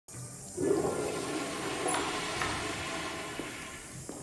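Toilet flushing in a public restroom: a sudden rush of water about half a second in that slowly dies away.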